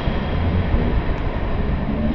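A steady, dense rumble of noise, heaviest in the low end, with no beat or melody.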